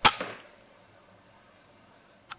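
A single shot from a Weihrauch HW100 .22 pre-charged air rifle: a sharp crack that dies away within half a second, with a smaller knock a fraction of a second after it.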